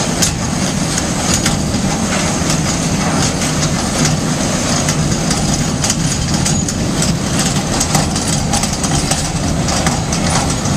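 1993 Zeno ZTLL 1600/1730 grinder running steadily, a loud even machine noise with frequent irregular sharp ticks and rattles throughout.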